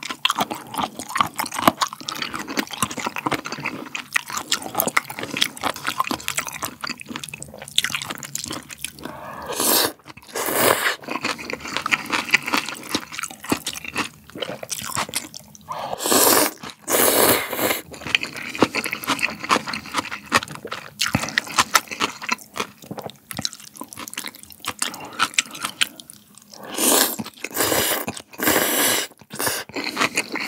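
Close-miked eating of cold raw-fish soup with noodles: crunchy chewing and many small mouth and utensil clicks, broken by three long noodle-and-broth slurps, about ten seconds in, in the middle and near the end.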